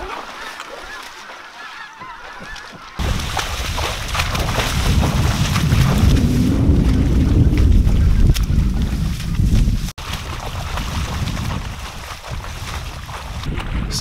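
Geese honking, at first fairly softly, then louder over a heavy steady rushing noise with a deep rumble that sets in about three seconds in. The rushing breaks off sharply near ten seconds and carries on more quietly.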